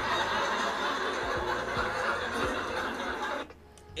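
A comedy-club audience laughing at a stand-up joke, cut off suddenly about three and a half seconds in.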